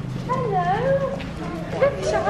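Indistinct people's voices, some high and gliding up and down in pitch.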